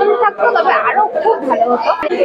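Speech: a woman talking, with the chatter of other people around her in a large room.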